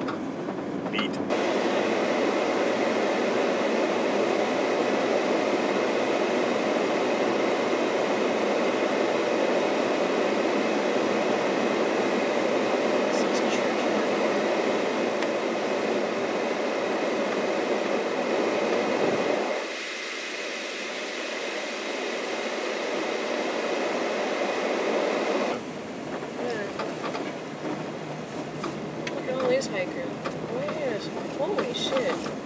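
Tyre and road noise inside a moving car's cabin, a steady rushing that thins out a little past halfway and drops in level near the end as the car turns onto a smaller road.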